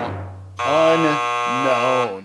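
The tail of a timpani drumroll dying away, then about half a second in a long held, voice-like pitched sting whose vowel shifts twice: a reveal sound effect.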